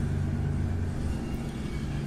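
Steady low hum with a background rumble, unchanged throughout.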